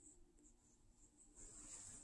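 Near silence: room tone with a faint, steady high-pitched hiss that grows slightly louder near the end.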